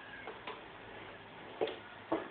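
A few short plastic clicks from a bouncing ride-on toy rocking under a baby. The loudest comes a little past one and a half seconds in.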